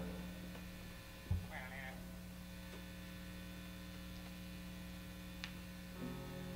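Steady electrical mains hum from idling guitar amplifiers, with one short low thump a little over a second in and a faint tick near the end.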